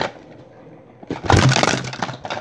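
A large inflatable rubber ball rolling off a plastic laundry basket and bumping and rubbing against the camera, with a short knock at the start and a loud scuffing clatter lasting most of a second from about a second in.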